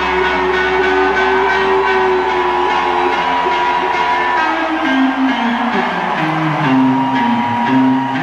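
Live band music led by an electric guitar, with long held notes and then a run of notes stepping downward in the second half.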